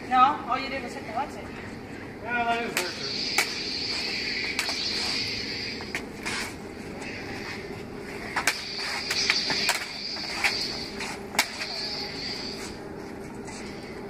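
Plastic toy lightsaber blades clacking together in a run of sharp, short hits, over a steady high hum.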